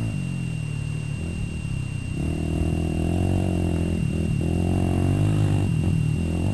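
KTM dual-sport motorcycle engine running, its pitch falling and rising with the throttle, with brief dips about four seconds in and near the end.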